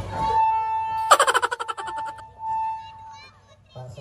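Electronic stage keyboard: a single held note, cut across about a second in by a sudden fast run of rapidly repeated notes that fades out, after which the held note carries on and then stops. A voice begins just before the end.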